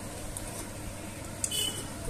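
Aluminium pot lids being handled, with one brief light metallic clink about one and a half seconds in over otherwise quiet background.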